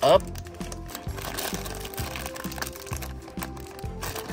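Foil blind bag crinkling in the hands as it is pulled at and worked open, under background music with a steady beat.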